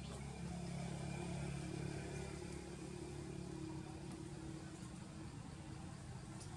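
A steady low engine hum, like a motor vehicle running nearby, a little louder in the first half and easing off slightly.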